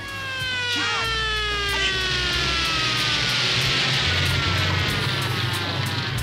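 A transition sound effect in a hip hop DJ mix: one long tone with many overtones that glides slowly down in pitch, like a passing siren, over a hiss, with a bass line continuing underneath.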